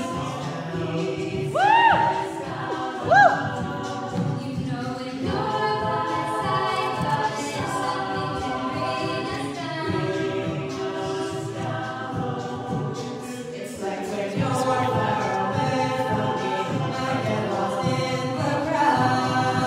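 Mixed-voice a cappella group singing, a soloist on microphone over sustained backing harmonies with no instruments. A loud voice twice swoops up and down in pitch about two and three seconds in.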